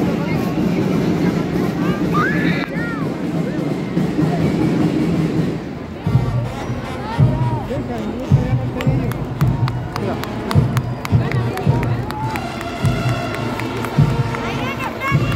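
Crowd chatter, then about six seconds in a marching band's drums start up: a bass drum beating about once a second with snare strokes between, and higher-pitched instruments joining near the end.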